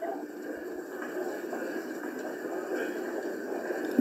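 Steady low hiss and background noise of an open voice-call line during a pause in the conversation.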